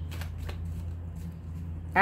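Tarot cards being handled and shuffled: a few soft card rustles in the first half-second, over a steady low electrical hum.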